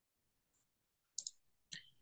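Near silence broken by a few faint computer clicks, two in quick succession just over a second in and one more near the end, as the presentation slide is advanced.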